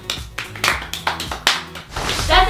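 Several people clapping their hands: a short, uneven run of claps over soft background music.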